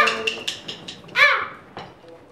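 A band's playing and a held sung note stop and trail off in a small room, then about a second in a single short 'ah' is sung into a reverb-laden vocal microphone as a soundcheck.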